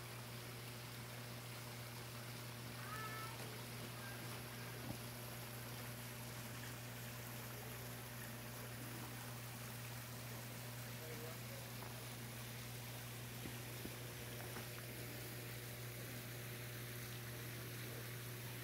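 Faint, steady running water of a small creek trickling over rocks, with a low steady hum beneath it.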